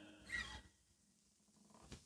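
A single short breath about a third of a second in, then near silence: room tone.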